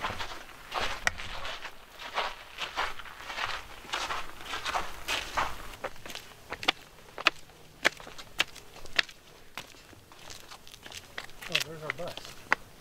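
Footsteps on a stone and gravel footpath and steps, a run of short scuffs and clicks at a walking pace.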